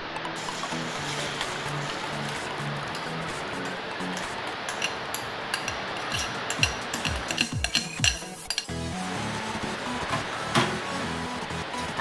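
Background music over egg batter being poured into hot oil in an aluminium wok, with a steady sizzle. Clinks of the bowl and spoon against the pan come more often in the second half.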